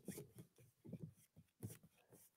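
Near silence, with faint, irregular short strokes of a paintbrush rubbing across canvas.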